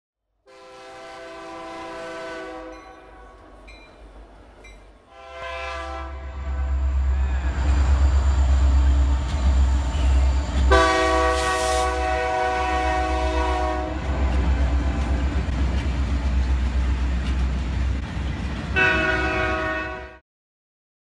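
Indiana Rail Road EMD SD90 freight locomotive sounding its multi-chime air horn in four blasts, the third the longest. A heavy low rumble of the locomotive and train rolling past swells in from about five seconds in and stays loud.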